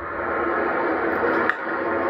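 Steady ballpark crowd noise from a baseball broadcast, with one sharp crack of a bat hitting the ball about a second and a half in: the swing for a home run.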